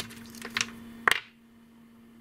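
Three sharp plastic clicks as an AA battery is pulled out of its plastic battery holder, the clicks coming at the start, about half a second in and just after one second. A faint steady hum runs underneath.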